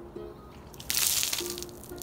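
A bowl of water dumped over a person's head, splashing down over him and onto the concrete in one short rush of about half a second near the middle. Background music plays underneath.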